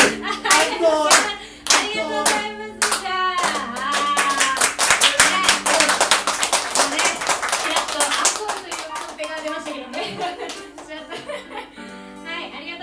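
Small audience clapping by hand, with voices over it; the clapping thins out and dies away about ten seconds in.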